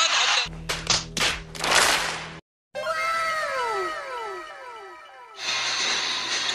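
Comic sound effects edited over a failed dunk replay: a quick run of sharp hits and rushes over a low hum, a brief cut to silence, then a string of overlapping echoing tones that slide down in pitch, a 'fail' effect.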